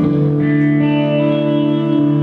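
Worship music: an electric guitar played through effects, holding long sustained chords that shift about a second in.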